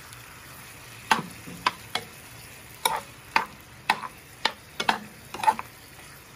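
Metal spoon stirring chunks of pineapple and tomato in a non-stick frying pan. It knocks and scrapes against the pan about ten times at irregular intervals from about a second in, over a low sizzle of frying.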